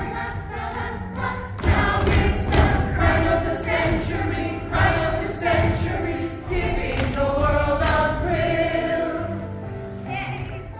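A cast singing together in chorus over an accompaniment, with the thud of dancers' feet on the stage floor now and then.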